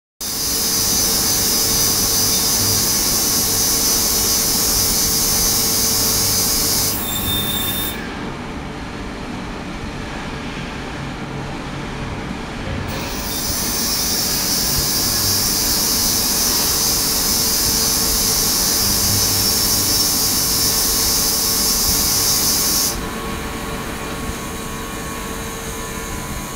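Ultrasonic tank running, treating the edges of immersed stainless steel parts: a steady high-pitched hiss over a faint hum. The hiss cuts out about eight seconds in, comes back about five seconds later, and drops away again near the end, leaving a quieter, lower sound.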